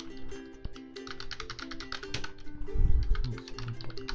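Computer keyboard typing in quick runs of keystrokes, over background music with a steady held melody. A deep low thump stands out about three seconds in.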